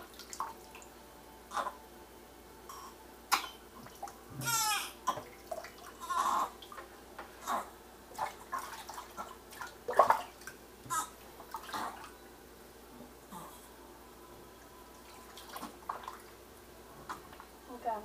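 Water splashing and sloshing in a kitchen sink as a newborn baby is washed by hand, in short irregular splashes, with a brief pitched sound about four and a half seconds in.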